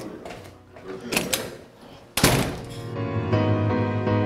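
Faint light table sounds, then a single loud thud about two seconds in, after which background music begins with steady sustained notes.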